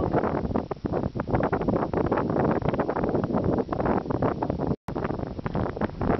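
Wind buffeting the camera microphone: a loud, irregular rumbling gusting. All sound cuts out for an instant about five seconds in.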